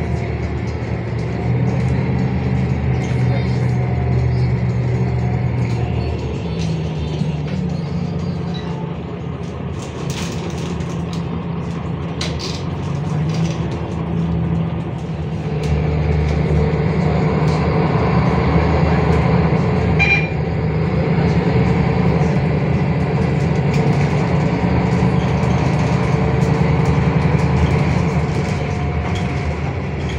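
Cabin sound of a MAN NL323F bus under way: its MAN D2066 LUH-32 straight-six diesel and ZF EcoLife automatic gearbox running. The engine note steps up in pitch about six seconds in and grows louder from about halfway through, with road and body noise throughout.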